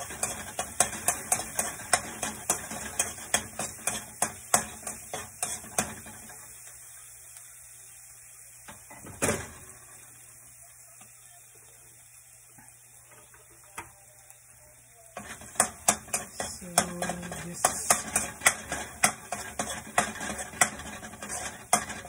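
Metal spoon scraping and clacking against a stainless steel wok, several strokes a second, as minced garlic is stirred in hot olive oil to brown without burning, over a faint sizzle. The stirring stops for about nine seconds in the middle, broken by one sharp clack, then starts again.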